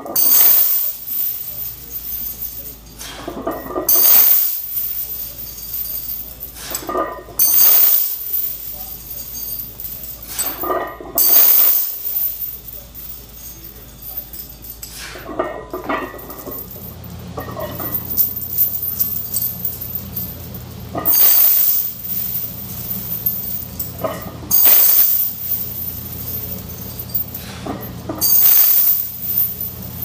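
Heavy steel chains hanging from a loaded barbell clinking and rattling against each other and the floor during squat reps, in loud bursts every three to four seconds as the chains gather on the floor and lift off again.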